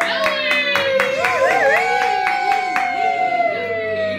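Quick, regular hand clapping for about the first second, about four claps a second, with one or more voices holding long notes that slowly fall in pitch.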